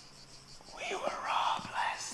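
A person whispering, starting a little under a second in and breathy rather than voiced.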